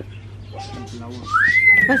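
A single loud whistle, a little under a second long, that rises and then falls in pitch.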